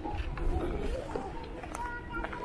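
Distant, indistinct voices of several people chatting and calling out, over a steady low rumble.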